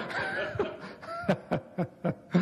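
People laughing: a man's short chuckling bursts, with a higher laugh early on.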